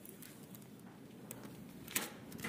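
Faint scattered ticks and light rustling from hands pressing and smoothing a vinyl decal onto a motorcycle's body panel, with a sharper click near the end.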